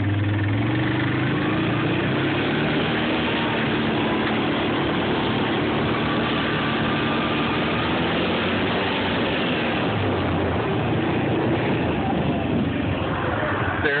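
Quad (ATV) engine running steadily while riding along a dirt track, its pitch drifting slightly up and down with speed, under a steady noisy rush.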